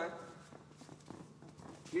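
Faint footsteps and shuffling of bare feet on a judo mat, a few soft scattered knocks, as a judoka gets up from the mat and steps back into position.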